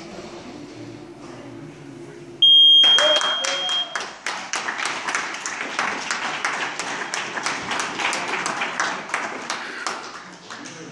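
An electronic match-timer buzzer gives one steady, high-pitched beep lasting about a second and a half, ending the grappling bout. The audience breaks into applause about half a second after the buzzer starts, and the clapping keeps going.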